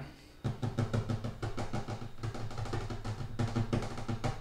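Fingers drumming rapidly on a wooden tabletop, many taps a second, starting about half a second in, picked up by a desk microphone with no noise suppression. Quiet background music plays from a phone alongside.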